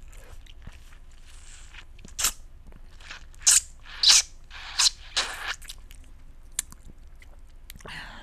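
Close-miked wet mouth sounds on a cut lemon half: a handful of loud, short sucks and slurps at the juicy flesh, bunched between about two and five and a half seconds in, with small lip clicks around them.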